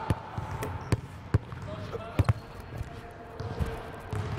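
A basketball being dribbled on a hardwood gym floor: a handful of sharp, irregularly spaced bounces, two of them in quick succession about two seconds in, as a player sets up a step-back jump shot.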